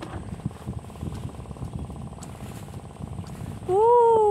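Wind buffeting the phone's microphone as a low, uneven rumble. Near the end a voice comes in with one long call that rises and then falls.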